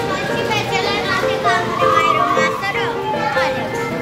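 Children's voices and shouts over background music, a melody of short, even notes.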